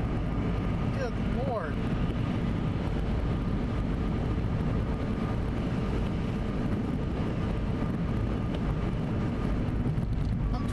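Steady road and engine noise of a car driving on a wet highway, heard inside the cabin, with faint steady tones running through it. A short gliding, voice-like sound rises and falls about a second in.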